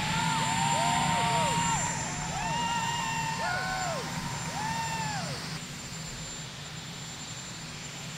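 Marine One helicopter running on the ground, a steady engine hum with a thin high whine. Several voices call out over it during the first five seconds, then only the helicopter is left, a little quieter.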